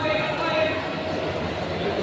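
Spectators' voices: a man calling out in the first second over the steady hubbub of a crowd.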